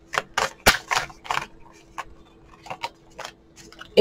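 A deck of tarot cards being shuffled by hand: a quick run of crisp card clicks and flicks in the first second and a half, then sparser ones.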